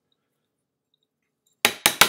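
Near silence, then about a second and a half in a quick run of three sharp clinking knocks of a small hard object.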